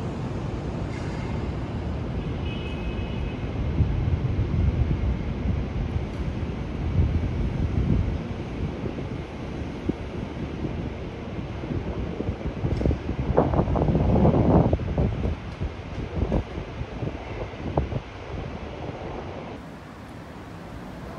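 Wind buffeting the microphone in uneven gusts, a low rumbling that swells and falls and is strongest about two-thirds of the way through.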